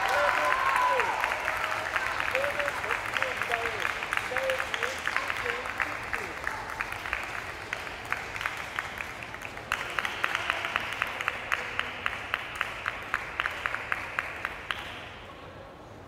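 Spectators clapping, with a few voices calling out in the first few seconds; the applause fades out about a second before the end.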